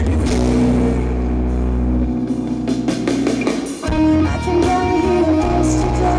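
Live rock band playing, guitars to the fore: electric and bass guitar over drums, with a brief break a little under four seconds in before the band comes back in.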